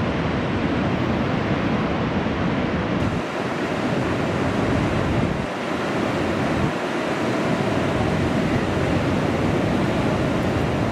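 Large ocean waves breaking and surf washing, with wind noise on the microphone. The sound shifts abruptly about three seconds in and the low end dips briefly a couple more times.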